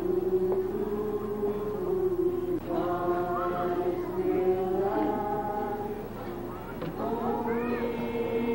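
A group of people singing a slow hymn together, with long held notes that step to a new pitch every second or two.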